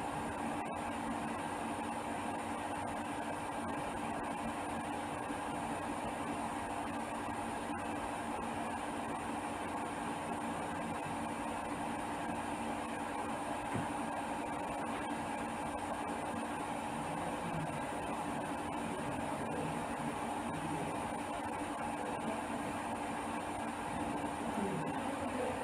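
Steady hum and hiss with no distinct events.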